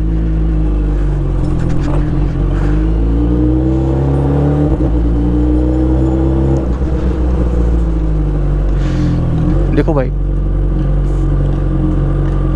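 Superbike engine running at low revs as the motorcycle rolls slowly, its pitch rising and falling gently a few times with small throttle changes.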